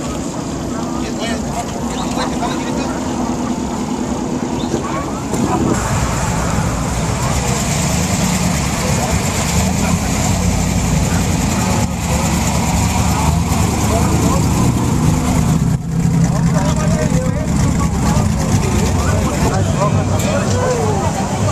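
Engines of off-road race trucks running at idle as they creep past in a slow line, a low steady rumble that grows louder about five seconds in, with crowd chatter around it.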